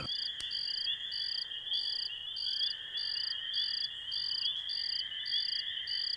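Night-time cricket chorus: a steady high trill, with a second, shorter chirp repeating evenly about one and a half times a second.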